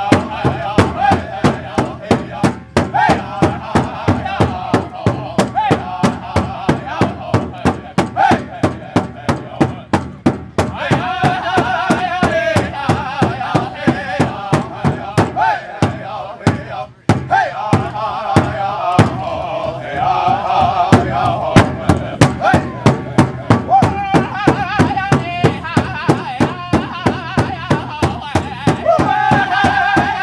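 Powwow drum group singing in unison in high men's voices over a steady, fast beat on a large shared powwow drum. The drumming and singing drop out briefly about seventeen seconds in, then carry on.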